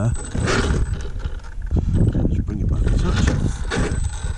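Radio-controlled rock crawler's electric motor and geared drivetrain whirring as it crawls slowly up a rock face, with irregular wind buffeting on the microphone.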